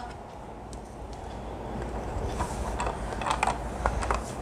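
Soft handling noise of plastic parts: a hologram projector's black plastic base being flipped over and set down on its clear plastic pyramid, with a few light clicks in the second half.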